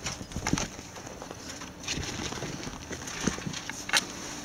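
A ferret scuffling and scrabbling on upholstery close by, with irregular soft clicks and knocks; the sharpest click comes at the very end.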